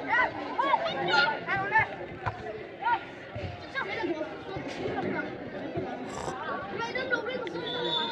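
Several people's voices calling out and chattering over one another around a football pitch during play, busiest in the first couple of seconds.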